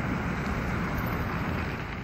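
Steady road traffic noise with a low rumble from cars on the street.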